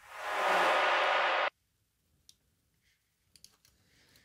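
A reverb-tail sweep effect sample previewed in Ableton Live's browser: a hissing wash of noise that swells up over about half a second, holds, and cuts off abruptly about a second and a half in. A few faint mouse clicks follow.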